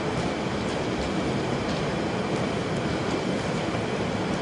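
Steady, even background noise without any distinct events: the room and recording hiss heard in a pause between sentences.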